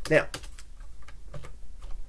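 A handful of separate keystrokes clicking on a computer keyboard as a line of code is deleted.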